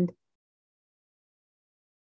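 Near silence: a pause in a woman's speech, her last word cutting off just at the start and no other sound following.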